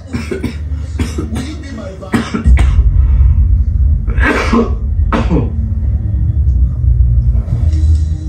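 A person who is ill coughing again and again: a quick run of short coughs over the first three seconds, then two harder coughs about four and five seconds in. Bass-heavy music plays steadily underneath from a television.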